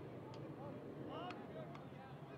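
Faint, distant shouts of players calling out on a lacrosse field, over a steady low hum of field ambience, with one faint sharp tick about a second in.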